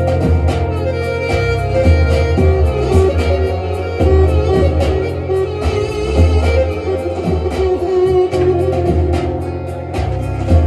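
Bağlama (long-necked Turkish saz) playing a fast instrumental passage of quickly plucked notes, over a deep bass line.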